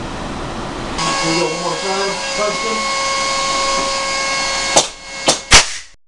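SR-1 portable plasma-armature railgun: a steady whine and hiss from its high-voltage charging electronics, then three sharp cracks within about three quarters of a second near the end as it fires semi-automatic rounds, the last crack the loudest.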